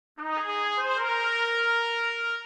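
Music with a brass lead melody: a few short notes climbing in pitch, then one long held note.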